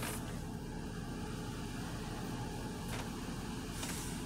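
Steady low hum inside a stationary car's cabin, with the engine or climate fan running. A short soft breath out comes just before the end as smoke is exhaled.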